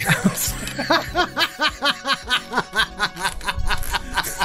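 A man laughing hard in a long run of short chuckles, about three a second, over quiet background music.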